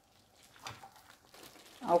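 Near silence: room tone with a few faint soft sounds, then speech begins near the end.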